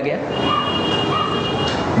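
Steady loud rushing noise with a thin high-pitched squeal in it. The squeal starts shortly after the beginning and stops just before the end.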